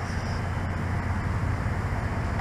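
Steady low rumble of vehicle and road traffic noise, with no clear events.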